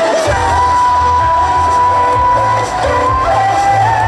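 K-pop dance track played loud over stage speakers, with singing, a heavy bass beat and one long held note through the middle, and some whoops from the audience.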